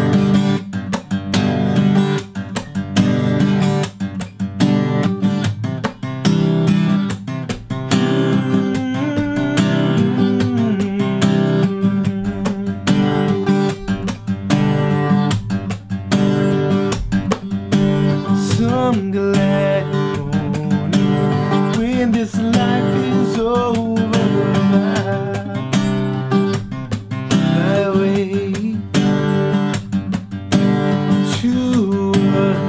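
Taylor acoustic guitar played with a slap-strum pattern: percussive smacks of the hand on the strings alternating with strummed chords, down and up, repeated in a steady rhythm.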